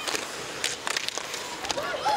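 Ice hockey game sound: skates scraping on the ice and several sharp clacks of sticks and puck over a steady arena hiss.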